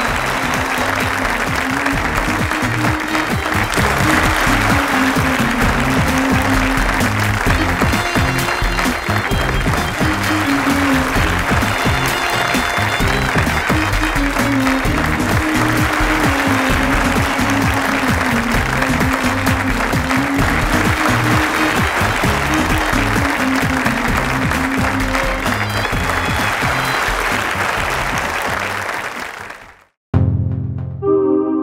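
Studio audience applauding over music; both fade out just before the end.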